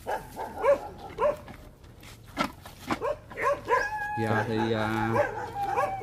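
Several dogs barking repeatedly at a passer-by, short barks every half second or so. About four seconds in, a steady low drone lasts for about a second.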